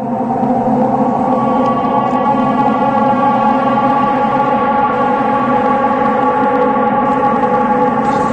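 A steady, sustained siren-like drone, several tones sounding together at one unchanging pitch.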